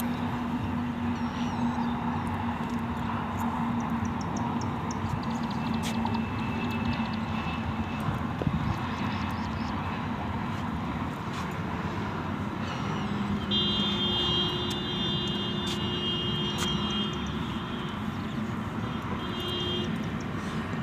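Steady hum of road traffic on a nearby elevated highway, a continuous even rumble. A high, steady tone joins in past the middle and holds for a few seconds.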